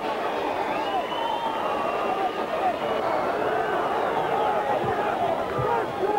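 Football crowd cheering and shouting in celebration of a late home goal, many voices overlapping in a steady din.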